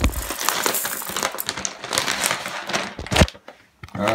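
Dry uncooked rice pouring into a pot, a dense rattling patter of grains. It ends with a single knock about three seconds in.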